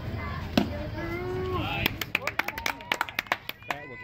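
A baseball smacking into the catcher's mitt on a low strike, a single sharp knock about half a second in, with distant voices around it. Then rapid hand clapping for about two seconds.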